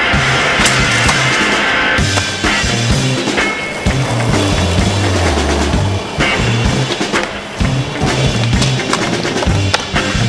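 Music with a deep, stepping bass line plays over a skateboard rolling on pavement, with several sharp clacks of the board hitting the ground.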